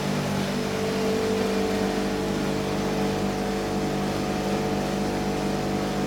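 Steady hum of a gelato batch freezer (mantecatore) motor running while it churns chocolate gelato, with a higher steady tone joining in about half a second in.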